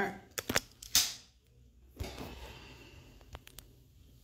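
Handling noise from a phone being picked up and moved: a few sharp clicks and knocks in the first second, a single thud at about two seconds, then faint ticks.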